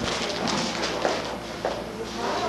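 A few scattered knocks, like footsteps or taps, over general room noise.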